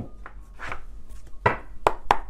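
A deck of tarot cards being shuffled by hand: a few sharp slaps and snaps of the cards, at uneven intervals.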